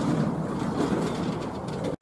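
Steady background noise of distant road traffic, with no pitched or sudden sound standing out.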